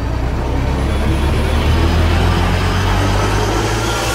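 Cinematic logo-reveal sound effect: a deep, loud rumble under a rising rushing hiss that swells into a whoosh near the end, then begins to fade.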